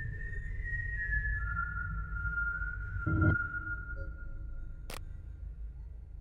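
A single high whistled tone, held steady and dropping to a lower note about a second and a half in, over a low music drone. A dull thud comes about three seconds in and a sharp click near the end.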